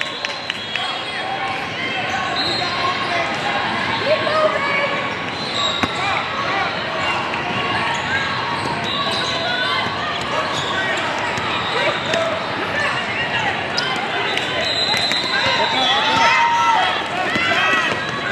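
Basketball being dribbled on a hardwood court, with sneakers giving short high squeaks several times, under the indistinct chatter of many voices in a large hall.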